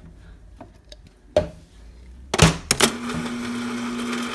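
Knocks as a plastic tumbler is pushed against a refrigerator's door water dispenser. From about three seconds in, the dispenser runs with a steady hum as it fills the cup.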